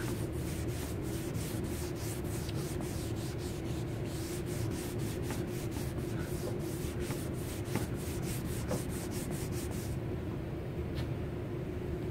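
A white rag rubbed rapidly back and forth over a car's painted panel, wiping off brake fluid left on the paint for nearly a day, in an even scrubbing rhythm of about four to five strokes a second that stops about ten seconds in. A steady low hum runs underneath.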